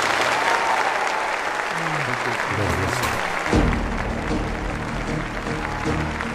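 Closing theme of a TV show: a burst of recorded applause over rising music, with a heavy bass beat coming in about three and a half seconds in.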